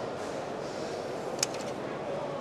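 Steady background noise of a busy exhibition hall, with a single sharp click about one and a half seconds in.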